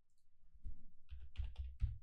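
Computer keyboard keys tapped about five times in quick succession in the second half, typing a new price into an order-entry field.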